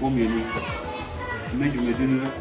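Speech: a man talking, with other voices in the background.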